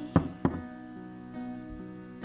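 Two sharp knocks about a third of a second apart, the first louder, over soft background music holding a sustained chord.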